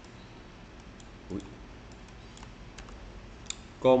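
A few light, scattered clicks of a computer mouse and keyboard, with a short exclamation about a second in and a voice starting near the end.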